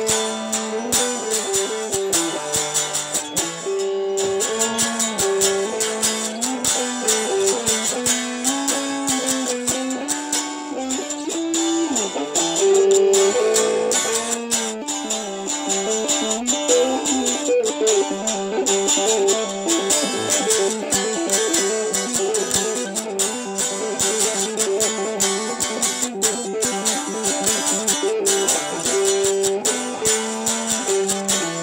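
Electric guitar playing an unaccompanied melodic solo of single-note lines with some bent notes. Around the middle it breaks into a run of fast tapped notes on the fretboard.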